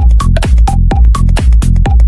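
Minimal techno track with a steady four-on-the-floor kick drum, about two beats a second, and short high percussion hits between the kicks. A brief synth blip follows each kick over a held bass line.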